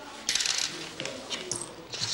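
Coins clinking onto a counter: a short bright jingle about a quarter of a second in, followed by a few lighter clicks as they are handled.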